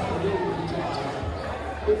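Basketball dribbled on a hardwood gym floor, with one loud bounce near the end, over steady crowd chatter.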